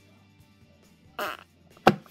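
A woman blows out a short puff of breath through pursed lips about a second in, then a single sharp knock, the loudest sound, just before the end. A faint steady low hum runs underneath.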